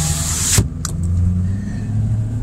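Wind and road noise rushing through a truck's open side window, cut off suddenly about half a second in as the power window shuts. What remains is the steady low hum of the truck's engine and tyres heard inside the closed cabin.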